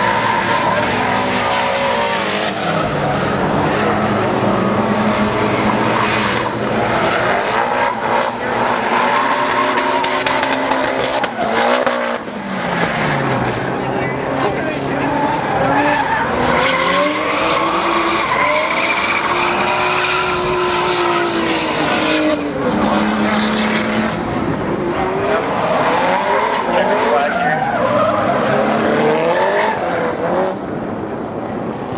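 Race car engines revving hard at full throttle, their pitch rising and falling repeatedly as the cars accelerate, shift and pass, with tires skidding and squealing as cars slide through the turns.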